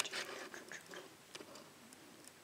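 Faint rustling and a few small clicks as a kitten wrestles with a hand in a lap, grabbing and mouthing at the fingers.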